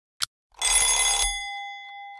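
Countdown timer sound effect: a last tick, then about half a second in a loud bell-like ring that stops after under a second and leaves one clear tone fading out, marking the timer reaching zero.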